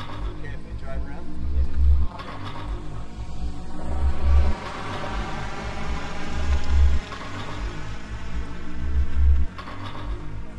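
Looping electronic soundtrack: a dense layered drone over a heavy low pulse that swells and then cuts off sharply about every two and a half seconds.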